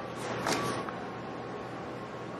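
Quiet room tone with one short sniff at a paper perfume blotter strip about half a second in.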